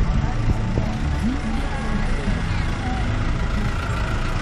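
Steady engine and road noise of a moving vehicle heard from on board, an even low hum that does not change.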